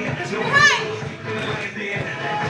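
A girl's short, high-pitched yell about half a second in, rising then falling in pitch, over a hip-hop dance track and the chatter of other girls.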